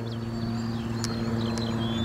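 A small engine running with a steady low hum that grows slightly louder, with a few short high chirps above it.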